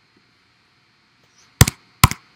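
Near silence, then a sharp double click of a laptop keystroke about a second and a half in: the start of a run of key presses.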